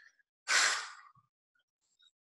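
A man's single audible sigh, a short breathy rush of air about half a second in, as he pauses mid-sentence.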